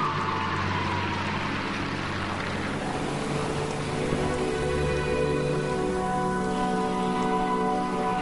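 Arena crowd applauding after a landed quad jump, the applause fading over the first three seconds. The skater's program music, with held notes, comes up underneath it.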